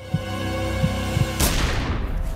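Tense sustained music with a few low thumps, then a single pistol shot about a second and a half in, fading off.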